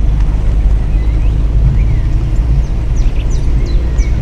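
Car driving, heard from inside the cabin: a steady low rumble of engine and road, with a few faint high chirps over it.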